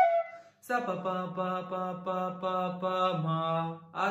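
A bamboo flute note ends at the very start. After a short pause a man's voice sings sargam note syllables in a chanting way: a run of short notes on the same pitch, stepping down to a lower note near the end, voicing the phrase 'sa pa pa pa pa pa pa ma' before it is played on the flute.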